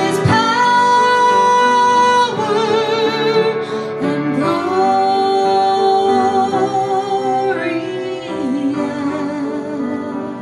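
A woman singing solo while accompanying herself on a grand piano, holding long notes with vibrato.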